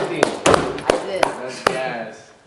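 Hand claps: about six sharp claps, slowing slightly, with voices over them.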